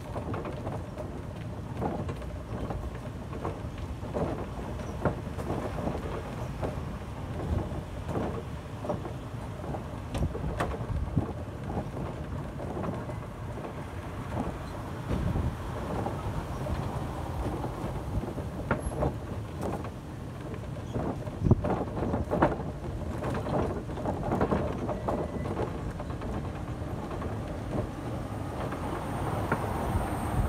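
Continuous rumbling and rustling with irregular knocks and clicks, several louder ones near the end: movement and handling noise on a phone's microphone as it is carried along.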